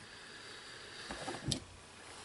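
Faint handling sounds of fly tying at the vise: a few light ticks, then one sharp click about one and a half seconds in.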